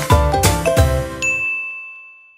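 The closing chords of background music, struck several times and then dying away, with a single bright bell ding about a second in that rings on as the music fades: a notification-bell sound effect.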